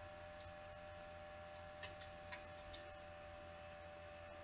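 A few faint computer keyboard keystrokes, single clicks spaced irregularly, over a steady low electrical hum.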